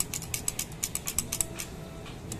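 A quick run of light mechanical clicks, about six to eight a second and a little uneven, like a ratchet, which dies away shortly before the end.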